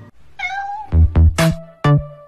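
A single short cat meow with a wavering pitch, then from about a second in electronic music with loud, punchy bass-drum beats.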